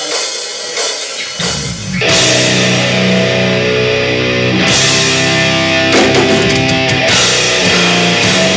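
Live death/thrash metal band: a few drum and cymbal hits, then about two seconds in the distorted guitars, bass and drums come in together and play on loudly.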